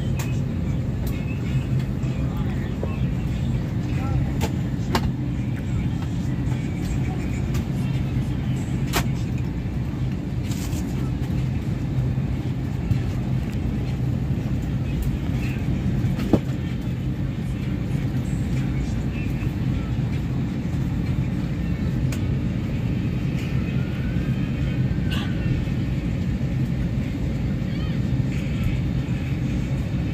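Steady low drone of a jet airliner's cabin at the gate, its engines and air system running. A few faint clicks sound over it, the sharpest about sixteen seconds in.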